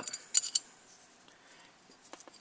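A couple of small metal clicks about half a second in, as the metal scribe point is worked in the end of a brass Stanley odd-jobs tool, followed by faint handling.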